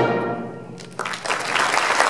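A concert wind band's final chord dying away in the hall's reverberation, then audience applause breaking out about a second in and growing louder.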